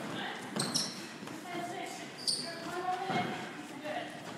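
Sneakers squeaking and feet moving on a hardwood squash court floor, faint, with a couple of sharper squeaks about three quarters of a second in and a little past two seconds.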